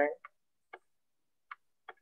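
Four faint, short clicks spread over about two seconds, with silence between them: the taps of a stylus on a writing surface as handwriting is added on screen.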